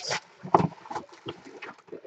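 Hands handling a cardboard Bowman trading-card box and its clear plastic wrapper: irregular rustles and light taps, with the sharpest tap about half a second in.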